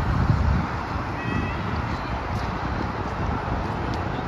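Steady low outdoor rumble, a little stronger in the first half second, with a short high-pitched call about a second in.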